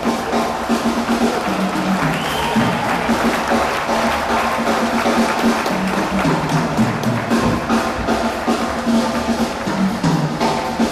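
Live bebop jazz from a quartet of saxophone, piano, upright bass and drums, with the bass walking in short stepped notes. It is heard from within the audience, with audience applause mixed in.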